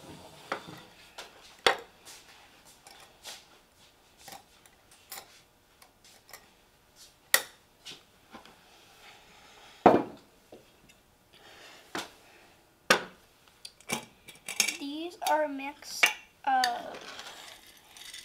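A metal spoon clinking and scraping against glass jars and bowls, and glass jars set down on a wooden table: scattered sharp clicks and knocks, the loudest about ten seconds in.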